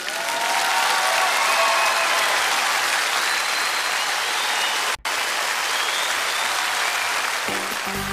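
Studio audience applauding, with stage music playing over the clapping. The applause breaks off for a split second about five seconds in, then carries on.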